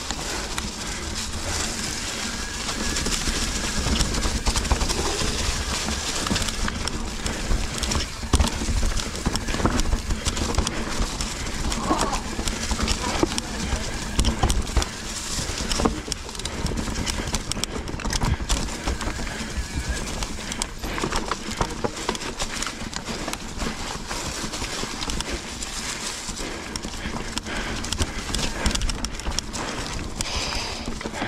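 Mountain bike, a Specialized Enduro, rolling over a rough trail: a constant clatter and knocking of the bike and tyres over rocks and roots, with a steady low rumble underneath.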